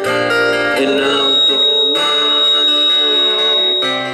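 Live band playing an instrumental passage: acoustic guitar strummed along with keyboard, with a thin high note held through the second half.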